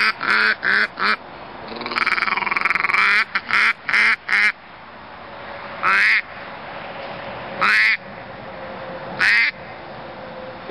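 Double-reed polycarbonate mallard duck call with a cocobolo barrel, blown by mouth to imitate mallard quacks. It opens with fast runs of short quacks and one longer quack that bends in pitch, then gives three single quacks spaced about a second and a half apart.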